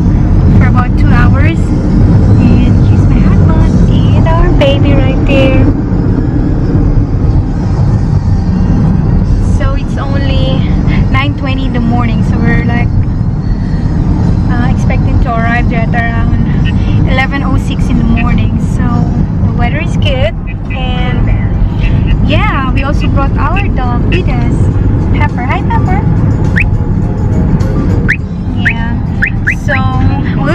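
Steady low road rumble inside a moving car's cabin, with a woman talking over it.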